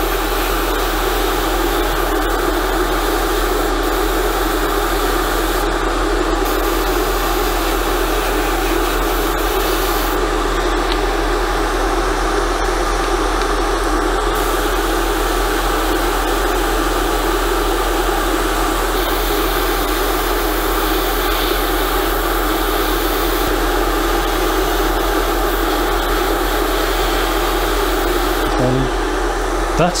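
Airbrush spraying weathering paint: a steady hiss of compressed air whose high end changes a few times, with a steady low hum underneath.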